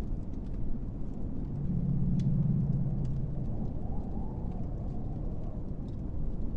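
Low rumbling ambient background, with a deeper steady drone swelling in about one and a half seconds in and fading after a couple of seconds.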